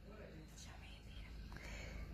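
Faint whispering voices over a low steady rumble.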